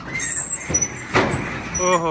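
Steel cage scraping and sliding across the metal bed of a truck as it is loaded, with high metallic squeaks and a knock about a second in. A man's voice starts near the end.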